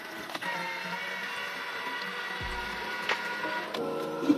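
Electric motor of an automatic self-cleaning toilet seat whirring steadily as the seat turns through its cleaning unit, with background music.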